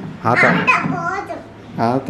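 Speech: a young child talking in short phrases in a small room.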